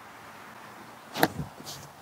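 A backhand disc golf throw: a single sharp knock with a quick rush of air about a second in as the disc is ripped out of the hand, followed by a brief hiss.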